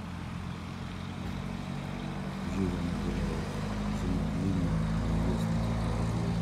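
Steady low hum of a motor vehicle's engine running nearby, growing louder about halfway through, over a background of traffic noise.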